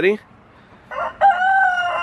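A rooster crowing once, starting about a second in: a short note, then a long held note that falls slightly in pitch.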